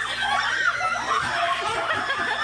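A group of people laughing and shrieking, several high voices overlapping.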